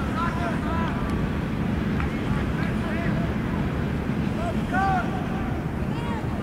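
Wind rumbling on the microphone, with short distant shouts and calls from players across a football pitch.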